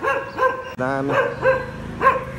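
A dog barking repeatedly, about four short barks in two seconds.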